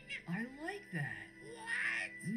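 Cartoon characters talking in high, squeaky voices over soft background music that holds a steady tone.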